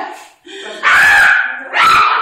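A person imitating a dog, giving two loud barks, the first about a second in and the second near the end.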